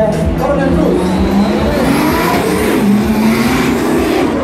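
Two drift cars sliding through a corner in tandem, engines at high revs and tyres squealing, with the engine note rising about halfway through.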